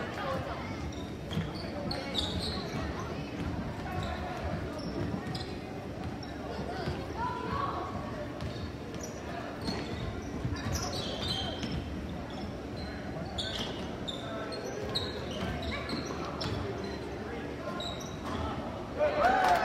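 Basketball dribbled on a hardwood gym floor, bouncing now and then, over the chatter of spectators in a large, echoing gym.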